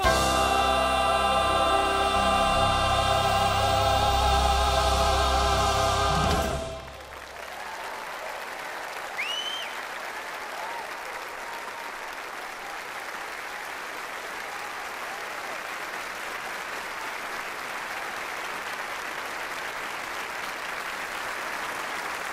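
A children's choir and male soloist hold the song's final chord over instrumental accompaniment, cut off sharply about six and a half seconds in. A congregation then applauds steadily, with a short whistle a couple of seconds into the applause.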